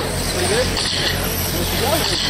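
Radio-controlled winged sprint cars racing on a small oval, their electric motors giving a high whine that swells and fades as the cars pass, over a steady low hum and brief voices.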